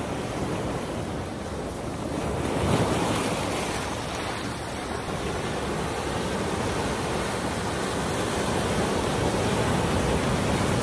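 Ocean surf breaking and washing around a rocky shoreline, a continuous rushing wash that swells louder about three seconds in.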